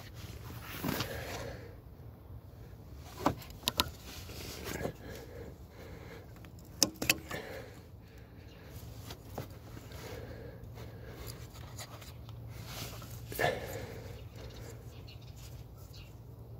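Hands handling the plastic wiring connector at a VW Golf 7's brake light switch on the brake master cylinder: scattered sharp plastic clicks and rustling, over a steady low hum.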